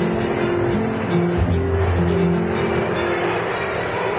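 Mariachi band playing live: strings and guitars hold sustained melody notes, with a deep bass note held through the middle.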